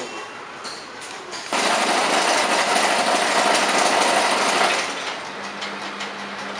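A machine running with a dense, steady mechanical noise that starts suddenly about a second and a half in and eases off near the end, leaving a low steady hum.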